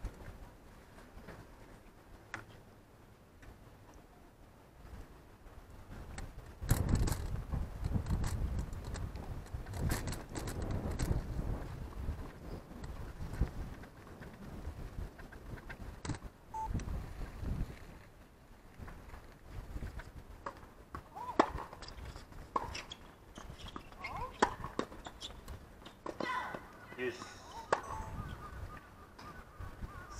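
Outdoor tennis doubles point: a low rumble of wind on the microphone, then tennis balls struck with rackets about a second apart in a rally, with short calls from the players near the end.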